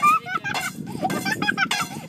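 Ostriches pecking feed out of a hand-held steel bowl: a run of quick clicks and rattles of beaks striking the metal, with voices over it.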